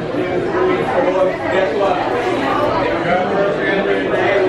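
Chatter of many people talking at once in a busy waiting area, a steady mix of overlapping voices with no single voice standing out.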